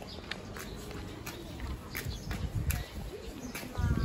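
Footsteps on pavement as someone walks along a street, a run of short sharp steps over a low steady rumble of street noise; near the end a short low cooing call.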